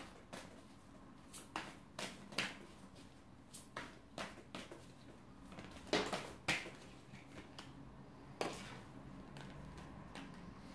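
Tarot cards being shuffled and handled off-camera: a scatter of light, irregular clicks and snaps, a couple of them sharper about six seconds in.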